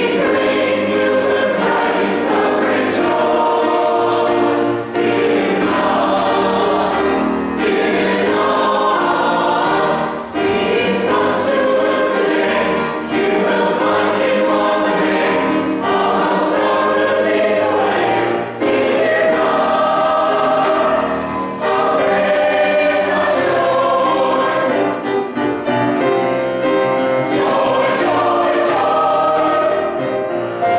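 Church choir singing a Christmas cantata anthem in continuous phrases, with brief breaths between them.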